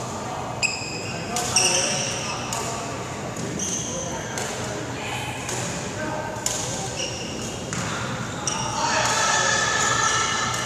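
Badminton play in a large, echoing hall: sharp racket hits on a shuttlecock at irregular intervals of about a second, with short squeaks of shoes on the wooden court. Voices chatter in the background, louder near the end.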